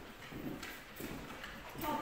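Footsteps on a hardwood floor: dogs' claws clicking irregularly as they walk, mixed with a person's steps.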